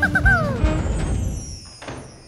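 Cartoon soundtrack music breaking off in a comic sound effect: three quick pitched swoops, then one longer downward slide that fades away. A single sharp click comes near the end.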